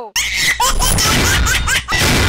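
Loud laughter from many people, breaking in suddenly just after the start and going on as a dense mass of overlapping laughs.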